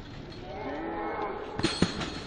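A drawn-out shout, rising then falling in pitch, followed near the end by two sharp thumps about a fifth of a second apart as the gymnast's feet strike the double mini-trampoline.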